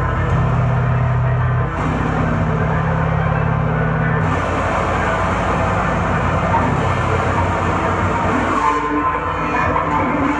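Live noise-rock band playing: guitars and drums hold a droning, sustained low chord, then about four seconds in the sound grows into a denser, brighter noisy wash.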